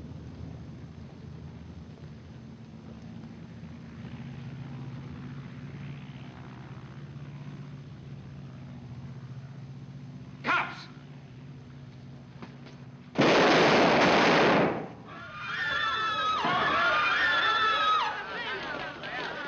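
Film soundtrack: low sustained tones of suspense music, then about thirteen seconds in a sudden loud burst of noise lasting over a second, followed by wavering high pitched tones.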